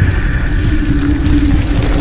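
Spooky sound-effects track: a loud, steady low rumble under a held droning tone.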